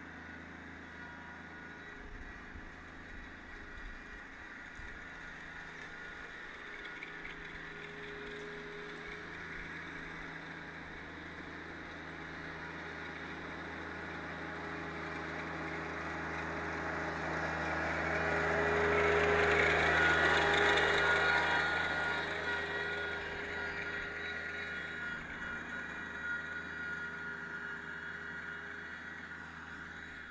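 A Rural King RK24 compact tractor's diesel engine runs steadily as it drives past dragging a pine straw rake through leaves and brush. It grows louder to a peak about two-thirds of the way through, then fades as it moves away.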